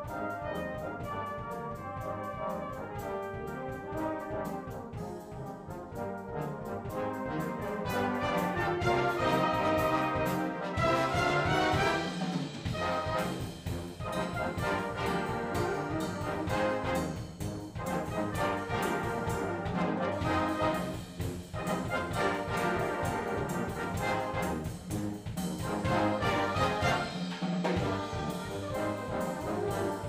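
Brass band playing with a drum kit keeping a steady beat underneath, growing louder about eight seconds in.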